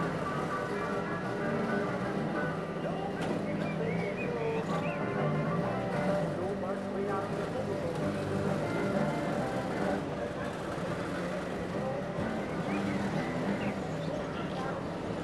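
Several Trabant two-stroke twin-cylinder engines running at low speed as a convoy of the cars creeps past, a steady overlapping buzz, with voices in the background.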